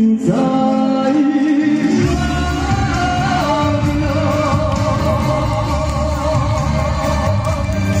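A male vocalist sings a Taiwanese Hokkien pop ballad live through a microphone and PA, holding long notes with vibrato over musical accompaniment. Deep bass in the accompaniment comes in about two seconds in. The sound rings in a large hall.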